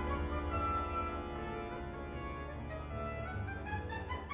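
Orchestral music with bowed strings carrying sustained melody lines over a steady low bass.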